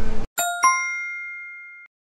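A bell-like ding added in editing over dead silence: two quick strikes close together, the second ringing on for about a second before cutting off sharply.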